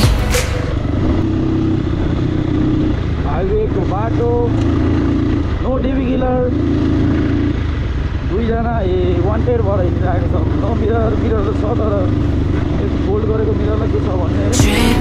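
Crossfire dirt bike engine running steadily as it is ridden along the road, with wind and road noise on the microphone. A voice comes and goes over it in the middle of the stretch.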